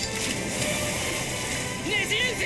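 Anime fight soundtrack: dramatic background music under sword-and-water sound effects, a sharp hit at the start followed by a rushing, sloshing swirl. A voice begins shouting near the end.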